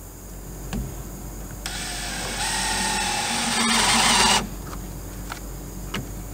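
Cordless Craftsman brushless drill-driver driving a screw into wood for about two and a half seconds, growing louder as it runs, then stopping abruptly. A couple of faint knocks can be heard before and after it.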